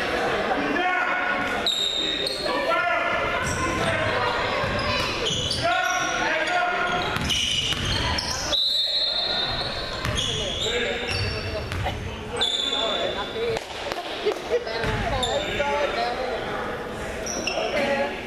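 A basketball bouncing on a hardwood gym floor among the voices of players and spectators talking and calling out, echoing in a large gym.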